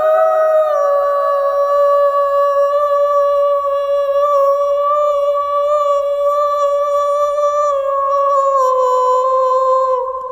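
A woman's voice holding one long wordless sung note in new age vocal toning, wavering slightly and stepping down a little in pitch near the start and again near the end.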